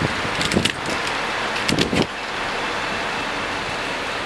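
Steady outdoor street noise like passing traffic, with brief low knocks or murmurs about half a second and two seconds in.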